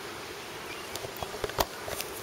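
Spinning reel being cranked, a steady whirring with a few light clicks.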